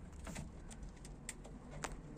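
A few faint, sharp clicks and taps, spaced irregularly over two seconds, above a low steady hum.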